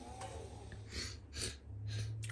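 A person sniffing, three short sniffs in the second half, checking for a smell of cigarette smoke.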